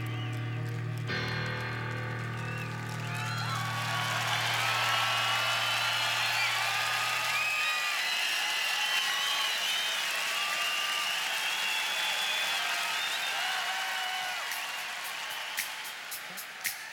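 A concert grand piano's last held chords ringing out and dying away while a large arena crowd cheers, applauds and whistles. A few sharp clicks come near the end.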